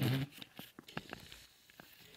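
A person's brief laugh, then a few faint, scattered clicks.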